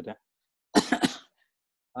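A man clears his throat once, a short rough double burst about a second in, set between moments of near silence.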